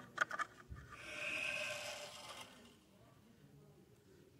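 A few clicks as a newly fitted garden tap is handled, then a hiss of about a second and a half with a faint whistle as the tap is opened wide and water rushes through it.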